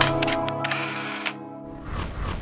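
Several camera-shutter clicks in quick succession over the last held notes of the music, followed by a short burst of hiss. A softer rushing noise comes in near the end.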